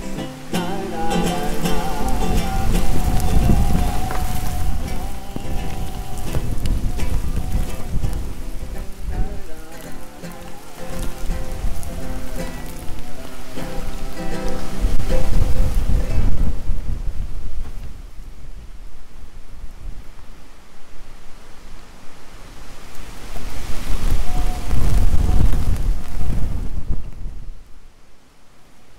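Tropical rainstorm: steady heavy rain with deep rumbles swelling up three times, loudest about fifteen seconds in. Nylon-string guitar chords ring at the start and die away within the first several seconds.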